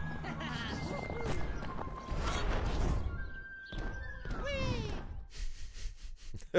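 Soundtrack of a short 3D animation: music mixed with sound effects and a character's short vocal sounds, with a long falling glide about four and a half seconds in.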